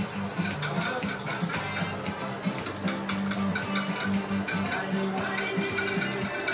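Background music playing over rapid clicking of eggs being whisked by hand in a bowl.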